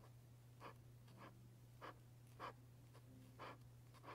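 Posca paint marker tip stroking on paper: about five short, faint strokes roughly half a second apart, over a low steady hum.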